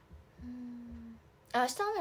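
A woman's short closed-mouth hum, one steady "mm" of under a second, followed by her voice starting to speak near the end.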